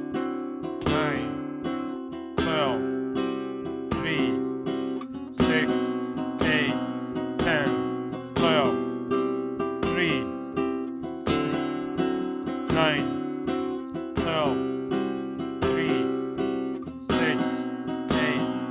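Flamenco guitar strumming chords in a twelve-beat compás rhythm, with regularly accented strokes and chord changes every few seconds.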